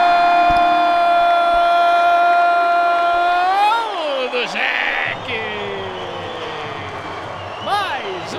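A football commentator's long drawn-out "Gooool!" shout, held on one steady pitch and ending with a rise and fall almost four seconds in. It is followed by quieter background noise, with a brief voice near the end.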